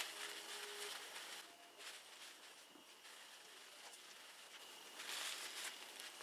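Faint rubbing and rustling of a cloth rag being worked over a chrome bicycle mudguard to spread metal polish. There is a soft click at the start, and the rubbing is a little louder in the first second and again near the end.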